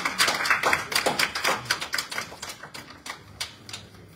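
Applause from a small audience, a dense patter of hand claps that thins out and dies away to a few last claps after about three seconds.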